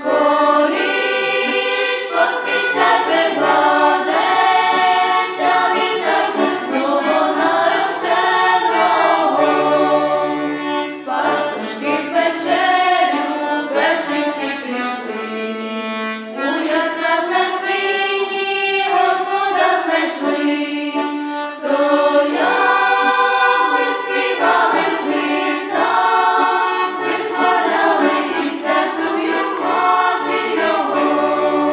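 A choir, mostly women's voices, singing a Ukrainian Christmas carol (koliadka) in phrases, accompanied by an accordion.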